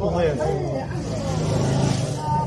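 People talking in a local language, over a steady low hum of a vehicle engine running.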